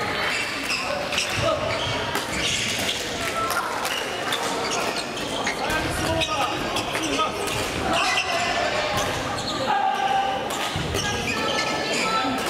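Badminton play in a busy sports hall: sharp racket-on-shuttlecock hits and players' footsteps on the court floor, repeated through the whole stretch, over a steady background of many voices echoing in the hall.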